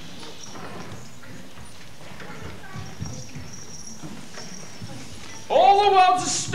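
Faint stage and hall sounds with soft shuffles and knocks, then about five and a half seconds in a man's loud voice suddenly calls out from the stage.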